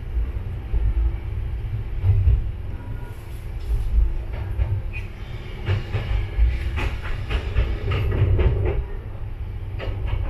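Tsugaru Railway diesel railcar running along single track: a steady low rumble of engine and wheels, with a run of clicks and knocks as the wheels cross rail joints and a set of points in the second half.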